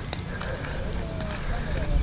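Low wind rumble on a DSLR's external clip-on microphone (DJI FM-15 FlexiMic), growing toward the end, with light footsteps on gravelly ground.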